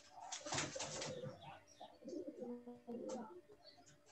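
Doves cooing, with low repeated notes and other irregular outdoor sounds.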